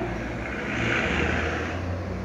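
Street traffic: a motor vehicle's engine runs under a steady low hum, with a swell of road noise about a second in as it gets louder and then fades.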